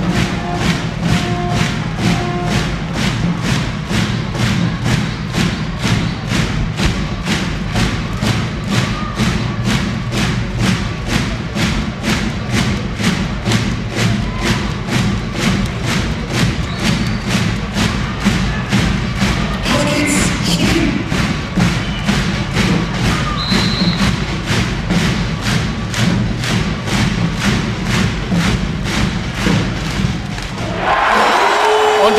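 Fans beating large bass drums in a steady rhythm, about two beats a second.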